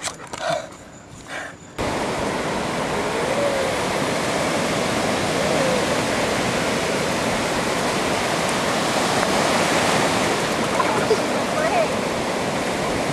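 Ocean surf washing up on a sandy beach: a steady rush that starts suddenly about two seconds in, after a brief quiet stretch.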